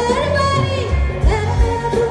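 Live band with a female singer, amplified through a PA: a sung melody gliding between held notes over electric guitars and a drum beat.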